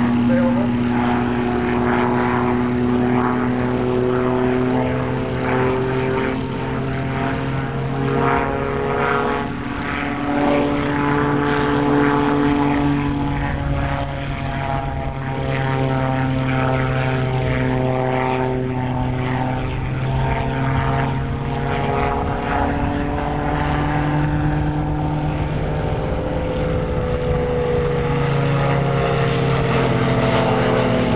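Propeller engine of a Kestrel Hawk ultralight running steadily in flight. Its drone drifts slowly up and down in pitch, easing lower near the end.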